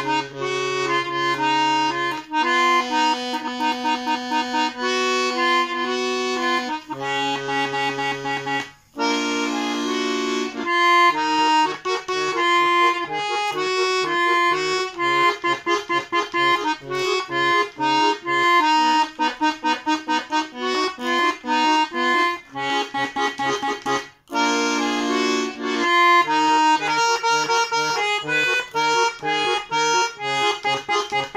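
Khromka garmon (Russian button accordion) playing a tune: a right-hand melody over pulsing left-hand bass and chord notes, with two short breaks in the sound, about 9 and 24 seconds in.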